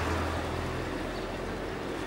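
A motor vehicle engine running close by in the street: a steady low hum under a loud hiss.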